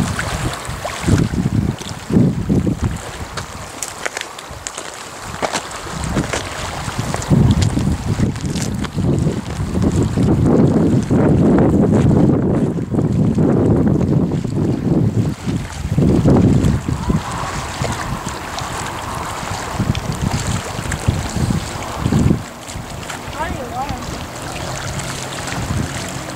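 Wind buffeting the microphone in irregular gusts, loudest in a long stretch through the middle and easing near the end.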